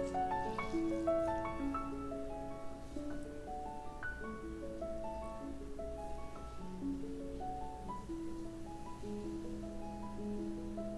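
Background piano music: a slow line of held notes overlapping one another.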